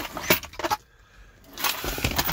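Plastic interior trim around the shifter being handled and lifted off: a few sharp clicks and rattles in the first second, then a rustling, scraping clatter near the end.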